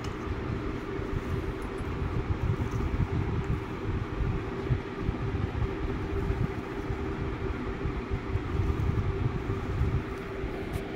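Steady low mechanical rumble with a constant hum, as of a machine running.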